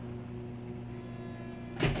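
A steady low hum with several even tones, unchanging throughout.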